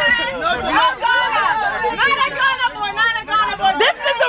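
People chattering: voices talking over one another.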